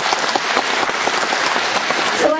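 Audience applauding: a steady round of many hands clapping.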